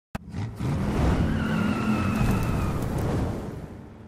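Car engine revving hard with tires squealing, as in a burnout, starting with a sharp click and fading out over the last second.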